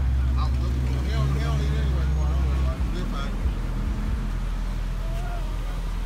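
Street traffic with a low rumble on the phone microphone that breaks up about three seconds in, and indistinct voices talking.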